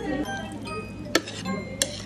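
Two sharp clinks of metal utensils against a ceramic plate, about a second in and again near the end, as raw beef yukhoe is mixed. Music plays in the background.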